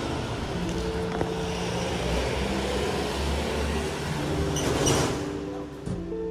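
Street traffic noise, a steady hum of passing cars, with soft background music notes under it and a louder rush near the end.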